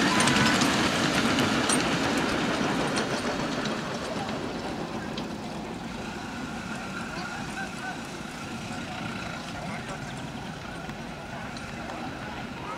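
Ridable miniature live-steam train running past, loudest at first and fading over the first few seconds as it moves away, then a steady low background of outdoor noise.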